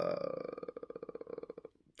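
A man's drawn-out hesitation 'uhh' that trails off into a low creaky rattle of vocal fry, fading away a little before he speaks again.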